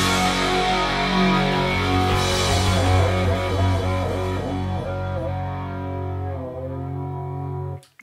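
Electric rock guitar with bass holding a final chord that rings and slowly fades, then cuts off abruptly near the end.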